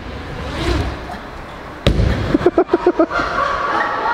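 BMX bike rolling over a wooden ramp, then one sharp thud about two seconds in as the bike lands a box jump, followed by short shouts and a held whoop from onlookers.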